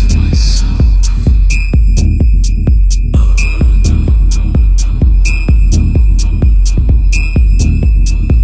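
Techno in a DJ mix: a steady kick drum about two beats a second, ticking hi-hats, and a high synth note that comes back every couple of seconds, with a noisy wash fading out in the first second.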